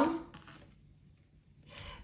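A tarot card being slid onto a tabletop as it is laid out: a soft, brief rubbing about half a second in, and a fainter rub near the end.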